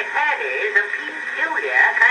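Men's voices speaking a comic rustic dialogue, from an early acoustic phonograph recording: thin and narrow, with no low end.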